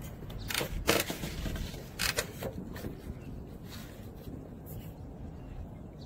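Heavy-duty plastic sheeting rustling and crinkling in several short bursts in the first few seconds as it is handled, over a steady low background rumble.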